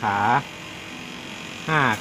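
A man's voice saying two short words in Thai, with a quiet pause between, over a faint steady low hum that runs underneath the whole time.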